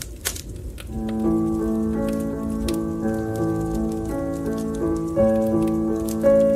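Fire crackling with scattered sharp pops over a low rumble; about a second in, instrumental music enters with held chords and a slow melody, louder than the crackle, while the pops go on beneath it.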